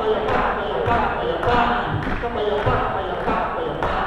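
Choir voices singing, with a few sharp knocks, one of them near the end.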